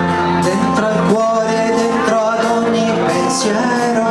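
A man sings a slow, melodic song into a microphone, with amplified instrumental accompaniment.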